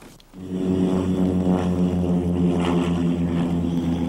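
Light single-engine airplane's piston engine and propeller running at a steady idle, with a low, even drone that comes in about a third of a second in.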